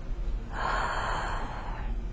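A woman's single long, audible breath through her open mouth, lasting about a second and a half.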